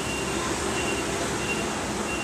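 Steady background noise without speech, with a faint high thin tone that comes and goes.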